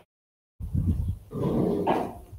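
A wordless, rough, low vocal sound from a man, like a throat-clearing, lasting about a second and a half and starting just over half a second in.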